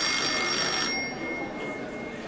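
A push-button desk telephone rings once, starting suddenly and holding strong for about a second before fading out, signalling an incoming call.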